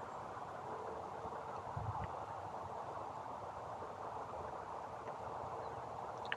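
The faint, steady hum of a small RC foamboard plane's brushless electric motor and 6x4 propeller in flight at a distance, over a steady outdoor hiss.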